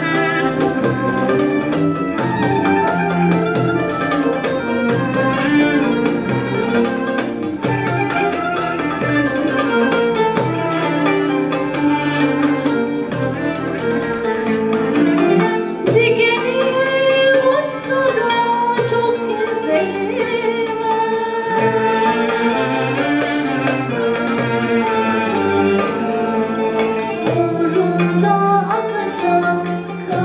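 Turkish art song in makam Kürdi played by a small ensemble of violin, kanun and keyboard, with a female soloist singing the melody; the voice stands out more from about halfway through.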